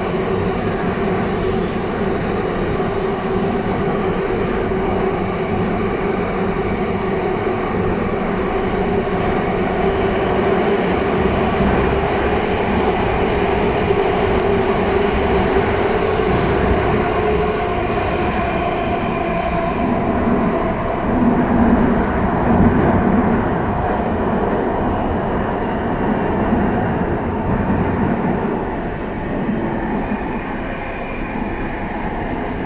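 Inside the car of an Alstom Metropolis C751C metro train running through a tunnel: a steady rumble of wheels on rail, with a faint humming whine that shifts in pitch. It swells briefly past the middle and eases a little near the end.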